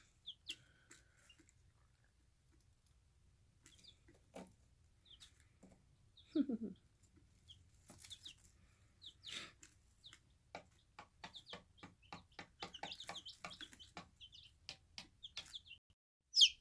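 Brooder of five-day-old chicks: faint, scattered soft peeps and chirps, with one short lower trill about six seconds in. Light clicks run through it and grow busier in the second half.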